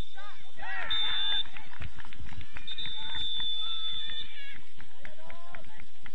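Referee's whistle blowing for full time: three blasts at one steady high pitch, a short sharp one about a second in and a long final one about three seconds in. Players' shouts sound around them.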